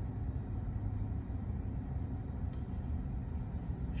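Steady low hum of background noise inside a parked car's cabin, with no distinct event.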